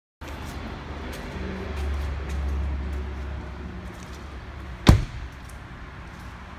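A car door shut with a single sharp slam about five seconds in, preceded by a low rumble and a few faint clicks.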